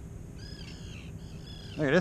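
A bird calling several times in quick succession, a run of short, harsh, arched calls lasting about a second, over a steady low background rumble.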